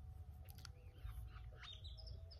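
Faint bird chirps, a few short calls heard in the pause.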